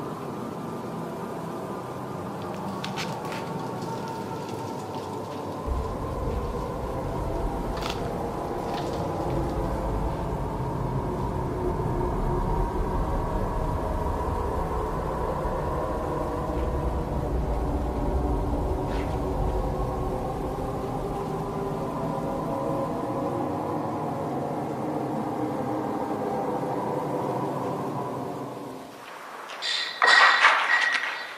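Dark, sustained horror-film drone of layered held tones, with a deep rumble coming in about six seconds in and a few faint clicks; it dies away just before the end.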